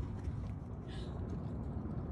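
Low, steady outdoor background rumble, with no distinct event standing out.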